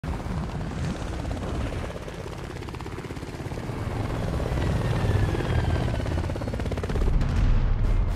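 Military helicopters' rotors chopping as they approach, growing louder, with a high whine falling in pitch about halfway through.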